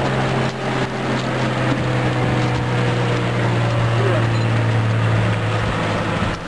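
A fishing boat's engine running steadily, a low even hum that dips slightly in pitch about half a second in, over a steady hiss.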